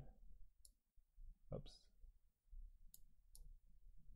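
Three faint computer mouse clicks against near silence: one about half a second in and two close together near the end.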